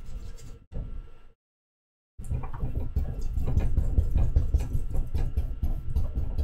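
Bristle brush scrubbing oil paint onto a canvas on the easel: rapid, scratchy strokes with a low knocking rumble. A brief dead gap comes about a second and a half in, then the scrubbing runs on busily.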